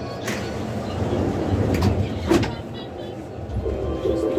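Inside a VAL 208 rubber-tyred driverless metro train: a steady low rumble of the train, which swells about one and a half seconds in, with three sharp knocks, the first just after the start and two close together past the middle.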